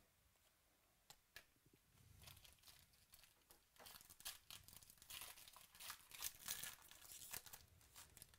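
Foil wrapper of a 2018 Chronicles Baseball card pack being torn open and crinkled by hand: a couple of light clicks about a second in, then quiet crackling that builds from about two seconds in and is loudest near the end.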